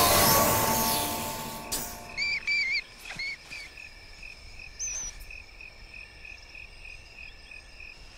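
Background music fading out in the first second or so, then cricket-like insects chirping in a steady, evenly pulsed series, with a few louder chirps a couple of seconds in.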